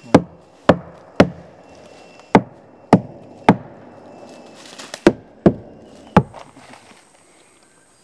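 A wooden stick beating on the buttress of a 'telephone tree', nine hard knocks in three groups of three, each with a low ringing tail. It is a signal struck on the buttress so that someone else in the forest can hear it and answer from another such tree.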